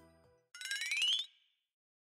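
Background music fades out, then a short sound effect glides quickly upward in pitch with a fast flutter, lasting under a second. It is a transition sting leading into a new section.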